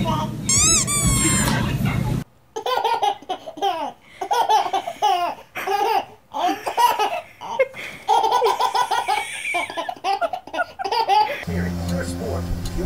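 A baby laughing in repeated short bursts of belly laughter, with one longer, drawn-out laugh past the middle. Near the start there is a brief high-pitched cry that rises and falls.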